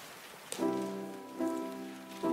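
Sustained chords on a keyboard instrument begin about half a second in and change to a new chord about every second.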